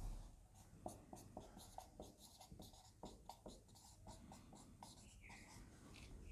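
Marker pen writing on a whiteboard: a faint run of short strokes and scratches as a word is written, with a brief squeak near the end.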